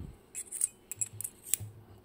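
Key being slid into the keyway of a Bowley door lock cylinder: a quick run of short metallic clicks and scrapes.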